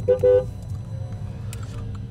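A car horn sounds two short toots right at the start, the second a little longer, two steady notes sounding together. A low steady rumble of the car running follows, heard from inside the cabin.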